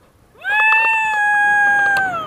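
A woman's long, high-pitched cry of excitement, a wordless held 'woo'. It glides up, holds steady for nearly two seconds, then slides down.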